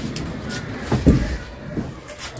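Scuffing and rustling of a person dragging himself across a carpeted floor, with a dull thump about a second in.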